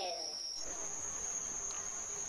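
Crickets trilling in one continuous high-pitched note; about half a second in, the note steps up slightly higher and carries on steadily.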